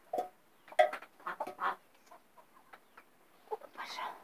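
Hens clucking in short calls, several in the first two seconds and another near the end.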